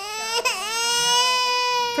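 Newborn baby crying: a short cry, then one long, steady wail.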